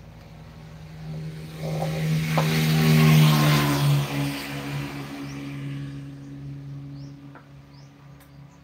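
A motor vehicle passing along the road: engine hum and tyre noise swell to a peak about three seconds in, then fade away.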